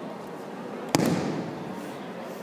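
A judoka thrown onto the tatami mat, landing in a breakfall with one loud slap about a second in that echoes briefly through the hall.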